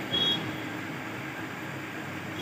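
Steady background noise with a faint hum, and a short high-pitched beep just after the start.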